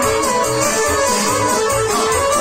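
Amplified live band playing Balkan folk dance music for a kolo: a winding lead melody over a steady bass beat of about three a second.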